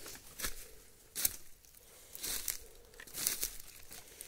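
Footsteps crunching through dry bamboo leaf litter, a crackling step about once a second.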